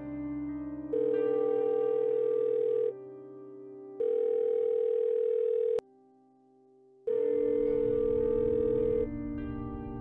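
Telephone ringing tone on an outgoing call: a steady beep sounding three times, about two seconds each with a second's gap, over soft background music. A sharp click about six seconds in.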